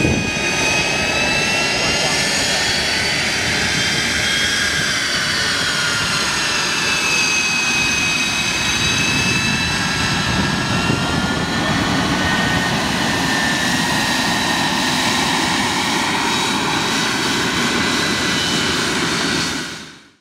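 Aero L-39 Albatros jet trainer's single turbofan engine running at taxi power as the jet rolls close past, a loud steady rush with a high whine. The whine drops in pitch in the first few seconds as the jet goes by, then holds steady.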